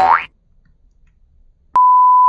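A short rising 'boing' sound effect at the start, then near silence, and near the end a loud steady beep at one pitch, like a censor bleep, that starts suddenly with a click.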